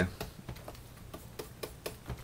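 Stylus tapping and clicking on a graphics tablet while drawing: about seven light, sharp ticks at irregular spacing.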